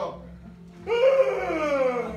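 A man singing a hymn to piano accompaniment: after a short break in the singing, about a second in, he takes up a loud held note that slowly falls in pitch.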